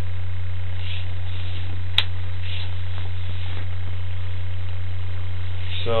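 Steady low electrical hum in the sewer inspection camera's recorded audio, with a single sharp click about two seconds in.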